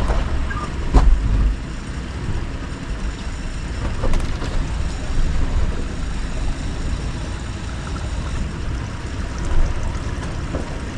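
Mitsubishi Montero engine running at crawling speed over a rocky trail, a steady low rumble heard from inside the cabin. Sharp knocks from the rocks come about a second in and again around four seconds in.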